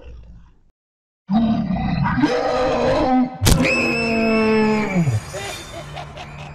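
Horror sound effects: a loud, rough monstrous growl for about two seconds, then a sharp crack, then a long held cry that drops in pitch and dies away near the end.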